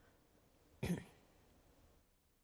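A person gives one short throat-clearing cough about a second in. The rest is faint background hiss.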